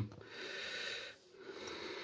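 A person breathing audibly close to the microphone: two soft breaths of about a second each.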